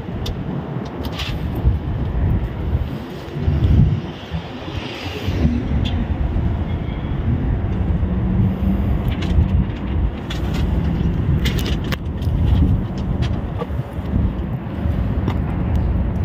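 Outdoor parking-lot ambience: an uneven low rumble throughout, with a few sharp clicks scattered through it.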